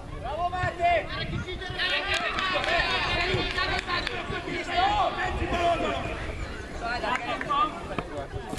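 Overlapping shouts and calls from spectators and young players at a children's football match, several high voices calling out at once, with no single speaker clear.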